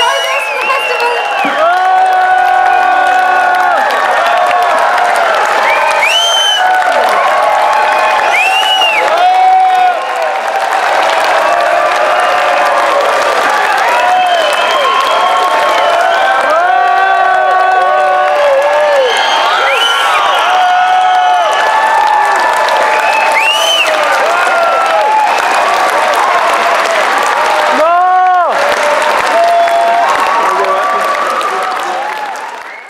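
Large crowd applauding and cheering, with many whoops and shouts over steady clapping.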